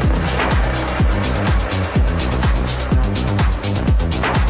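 Minimal techno track playing loud, with a steady four-on-the-floor kick drum at about two beats a second and busy hi-hats over a bass line.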